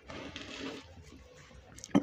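Faint rustling scrape of a rag-wrapped wire being pulled against a washing machine's rubber door boot, lasting under a second before it falls quiet.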